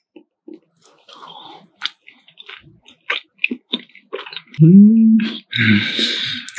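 Close-miked wet chewing of a piece of salmon sushi, with scattered soft clicks and squishes. About four and a half seconds in comes an appreciative "mmm", then a loud breathy mouth noise near the end.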